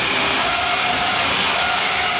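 Full-body spinner combat robot with its shell spinning at speed, giving a loud, steady whirring rush.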